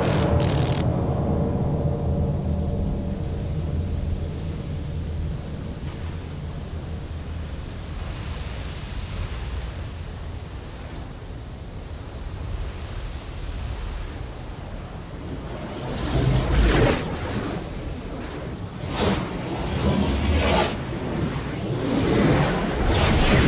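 A steady rushing noise like wind or surf, with a low rumble underneath. From about sixteen seconds in it is broken by a few louder sudden surges, the first with a heavy low thud.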